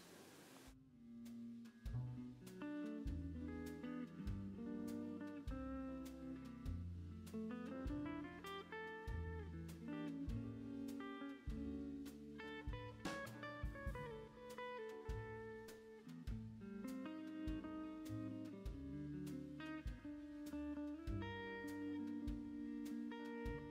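Instrumental background music led by a plucked guitar over a low bass line, starting about a second in.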